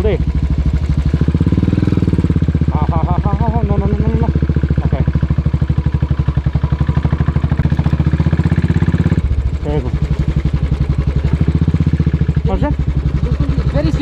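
Royal Enfield Classic 500's single-cylinder engine running as the bike is ridden over a rough dirt track, a steady beat of firing pulses. The engine note drops about nine seconds in.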